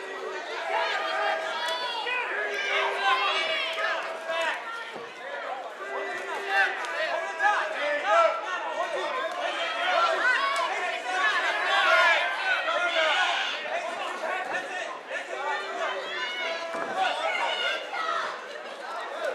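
Many overlapping voices of a small crowd of fight spectators shouting and calling out, with no single voice standing clear. Several drawn-out shouts rise above the chatter.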